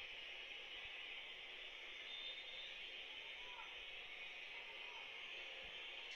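Steady stadium crowd noise from a football broadcast, heard thin and hissy through a television's speaker, while a penalty is about to be taken.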